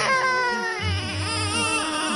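A high-pitched, wavering crying wail: a long cry that falls away over the first second, then a second, shorter cry about a second in.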